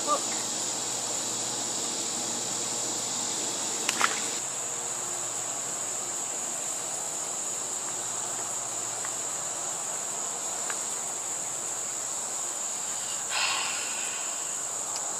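Steady, high-pitched chorus of insects, with a short sharp sound about four seconds in and a brief noisy burst near the end.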